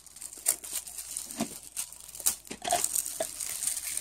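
Iridescent plastic gift wrap crinkling and rustling as a present is unwrapped, in irregular crackles that get busier in the second half.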